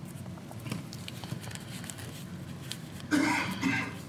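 Faint rustling and light clicks of thin Bible pages being turned at a pulpit, with a short vocal sound from the man about three seconds in.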